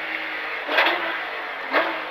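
Porsche 911 (997) GT3 rally car's flat-six engine heard from inside the cabin, holding a steady note, with a short rush of noise just under a second in and the pitch rising near the end as it accelerates.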